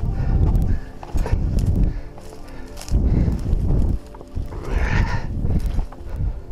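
Rigid fixed-gear mountain bike rattling and bumping over a rocky dirt trail, heard from the bike-mounted action camera, with wind buffeting the microphone in loud, uneven low bursts. A brief harsher scraping hiss comes about five seconds in.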